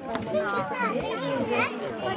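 Several children's voices chattering and calling out over one another, high-pitched and close by, with no clear words.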